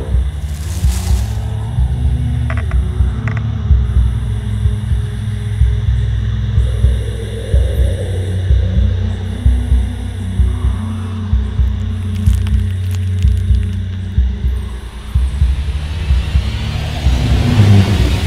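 Dark horror-film score: a low, rumbling, pulsing drone that swells into a rising hiss over the last few seconds.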